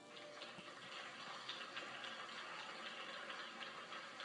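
Faint audience applause, a steady patter of many small irregular claps, heard through a television speaker as the dance piece ends.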